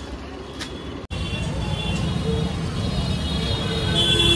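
Road traffic noise with background music laid over it. The sound breaks off abruptly about a second in and comes back louder.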